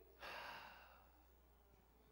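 A man's short, audible breath out, a sigh into the pulpit microphone, lasting about half a second. Otherwise near silence over a low, steady hum.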